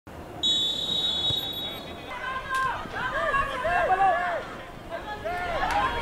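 Referee's whistle blown for the kickoff: one steady, high blast of about a second and a half, starting about half a second in. Then several voices shout and call out.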